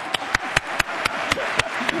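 Audience laughing and clapping after a joke, with sharp claps about four a second standing out over a haze of laughter.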